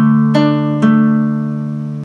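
Nylon-string classical guitar fingerpicked: a D minor arpeggio, three plucked notes within the first second, left to ring and fade, then damped right at the end.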